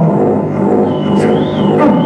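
Improvised noise music from a double bass and electronics: a dense, loud drone of many held low tones, with a thin high tone that rises and falls near the end.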